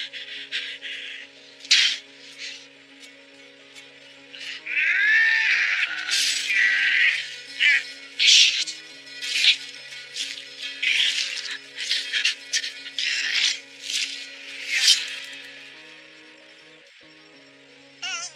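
Dramatic film score of sustained low notes that shift in steps. Over it comes a string of short, loud, noisy hits, and a wavering, sliding cry about five seconds in.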